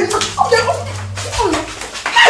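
Women crying out in short, falling exclamations as they scuffle, with slaps and knocks of the struggle. A steady low hum runs underneath.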